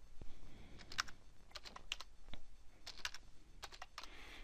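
Computer keyboard clicking: a dozen or so short keystrokes at irregular spacing as a line of code is copied and pasted repeatedly.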